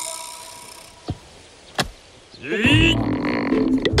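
A hoe blade striking the soil of a bamboo grove twice, about a second in and again near two seconds, followed by a man's straining grunt as he digs for winter bamboo shoots.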